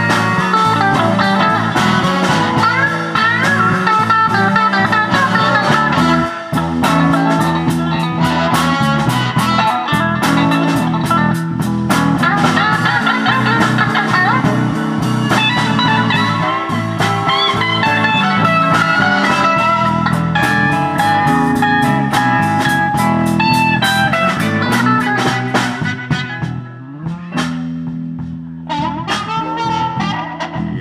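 Live blues band with a bending electric guitar solo on a Stratocaster-style guitar over bass and drums. Near the end the band drops to a quieter, sparser passage.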